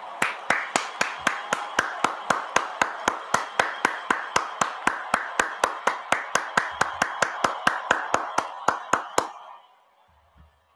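Applause: one person clapping steadily, about four sharp claps a second, over a softer wash of many hands clapping. It stops abruptly about nine seconds in.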